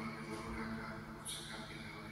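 A man's voice speaking at a distance in a large, high-vaulted church nave, over a steady low hum.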